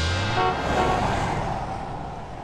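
Sound effect of a car driving past: a rush of engine and road noise that swells and then fades away, over the tail of a music sting.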